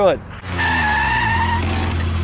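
Car sound effect: a low engine rumble with a steady, high tyre screech whose pitch sags slightly, starting about half a second in.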